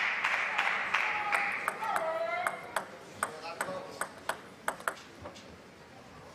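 Arena crowd applauding and calling out, fading away over the first couple of seconds. Then a celluloid table tennis ball bounces repeatedly at an even pace, about three bounces a second, getting fainter.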